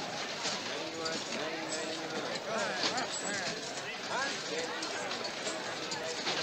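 Indistinct chatter of a crowd, many voices overlapping, with scattered light clicks and clatter.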